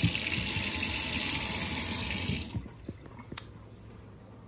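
Kitchen faucet running water into a stainless steel sink, then shut off about two and a half seconds in. A couple of faint knocks follow.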